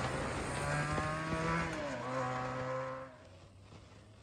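Benelli TNT 300's parallel-twin engine accelerating away through the gears. Its pitch climbs, drops at an upshift about two seconds in, and climbs again. The sound falls away sharply about three seconds in, leaving the engine faint.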